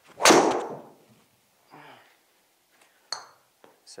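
A driver strikes a golf ball about a quarter second in: one loud, sharp crack that dies away over about half a second in a small room.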